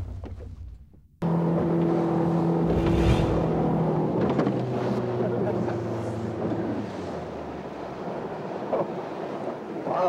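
Motorboat engine running steadily, cutting in abruptly about a second in, its pitch dropping a little about seven seconds in as the boat slows.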